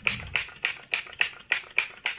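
Fine-mist pump spray bottle of makeup setting spray being pumped rapidly onto the face: a quick run of short hissing sprays, about four a second.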